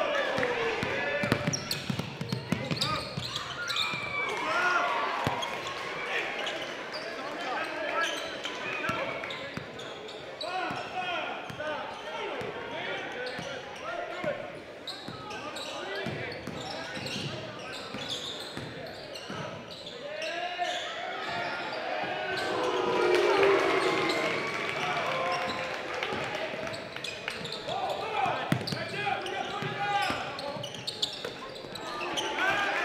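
Live basketball game sound in a large gym: a basketball bouncing on the hardwood court amid echoing voices of players and spectators.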